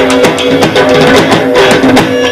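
Live Punjabi folk music: an instrumental passage with a plucked string instrument playing over a steady percussion beat, between sung lines.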